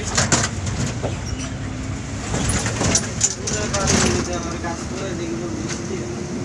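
Interior of a moving bus: a steady low engine and road rumble with scattered rattles, while passengers talk.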